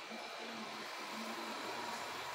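Quiet, steady background noise with a faint low hum and no distinct events.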